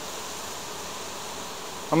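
A colony of Carniolan honeybees buzzing steadily in an opened hive.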